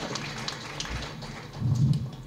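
A pause in a man's speech into a handheld microphone: faint scattered crackles over a light hiss, then a brief low voiced sound near the end.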